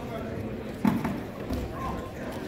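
Indistinct voices of spectators chattering in a gym, with a sharp thump on the wrestling mat a little under a second in and a softer one about half a second later, as the two wrestlers close in and tie up.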